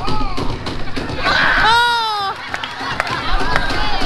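A loud, drawn-out shouted call of 'Ape' that falls in pitch, with laughter around it and a few sharp knocks just after.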